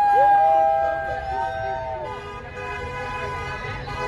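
Several horns sounding long, overlapping blasts at different steady pitches, each held for a second or more, over crowd noise. It is loudest in the first second and eases off after about two seconds.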